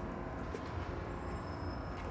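Steady low rumble of city traffic.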